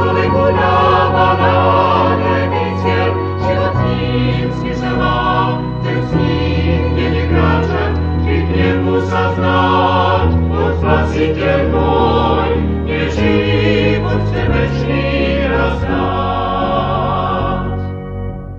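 A choir singing a Christian song, live-recorded and played back from a 1987 cassette tape, with sustained low bass notes under the voices. The song reaches its end at the very close.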